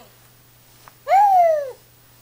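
A young baby's single loud coo, starting about a second in and lasting under a second. Its pitch rises briefly, then slides down.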